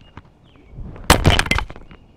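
A Deity BP-TX wireless transmitter dropped onto a concrete driveway: one sharp, loud hit about a second in, followed by a few smaller knocks as it bounces and settles.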